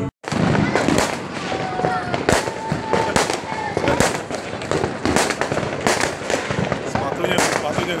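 Fireworks and firecrackers going off at New Year's Eve, sharp bangs at irregular intervals of about one to two a second, over people talking.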